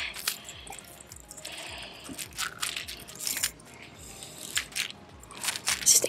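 Metal pliers clicking and scraping against the treble hooks of a jointed hard swimbait as it is worked free from a largemouth bass's mouth, in short irregular clicks.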